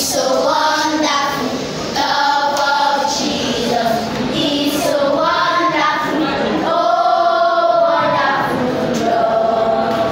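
A group of children singing a song together, with a long held note near the end.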